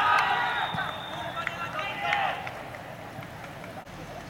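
Several men shouting at once on a football pitch, with a referee's whistle blowing one steady high note for about a second near the start. The whistle stops play for a penalty.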